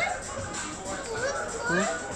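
A young child's high voice speaking or calling out, over background music.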